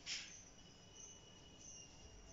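Very faint sounds: a marker scratches once across a whiteboard just after the start. After it a thin, high, steady tone comes and goes faintly.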